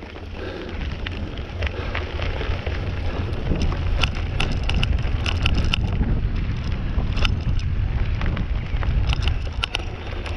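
Mountain bike rolling down a loose gravel and dirt track, with tyres crunching and sharp clicks and rattles from the bike over bumps, heaviest around the middle and near the end. Wind is buffeting the camera's microphone throughout.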